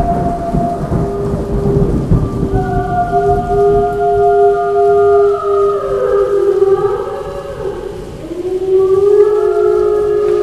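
Storm sound effect opening a black metal track: steady rain and rumbling thunder, with several wolves howling over it in long, overlapping held tones. The howls slide down in pitch partway through, then rise again.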